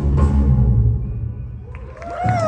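Post-punk band playing live, with heavy bass and a few drum hits in the first second. The sound fades away over the second half as the song comes to an end.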